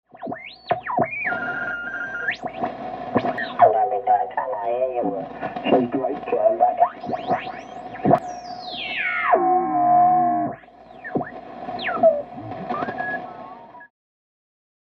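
Intro sound effects of whistles gliding up and down over a steady tone, with warbling voice-like fragments, like a shortwave radio being tuned across signals. A long falling sweep comes about eight seconds in, and the sound cuts off suddenly at the end.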